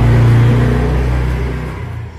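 A motor vehicle engine running steadily with a low hum, fading out gradually toward the end.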